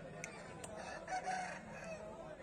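Rooster crowing: one crow starting about half a second in and lasting a little over a second.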